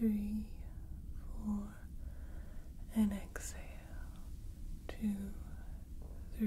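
Steady low rumble of a sci-fi starship engine-hum ambience, under a woman's soft, whispery voice counting out a breathing exercise, one word about every second and a half.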